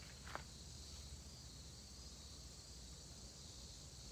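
Faint, steady high-pitched buzz of insects chirring outdoors, with a single click about a third of a second in.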